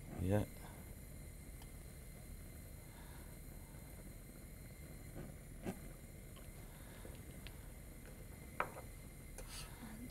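Quiet steady low hum with a few faint clicks and knocks from glassware and a plastic petri dish being handled, one about halfway through and another near the end.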